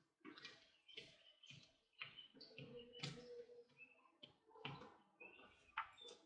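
Faint, irregular soft taps and rustles, about two a second, of fingers pressing and squashing plasticine on paper laid over a table.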